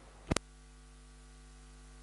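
Steady electrical mains hum, with one brief sharp click about a third of a second in.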